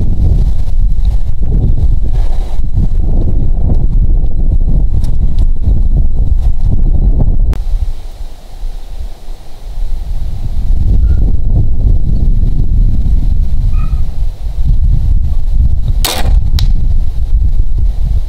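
Wind buffeting the microphone throughout, easing for a couple of seconds in the middle. Near the end an Excalibur Axiom recurve crossbow is shot with a single sharp crack, followed about half a second later by a fainter crack as the bolt strikes the target.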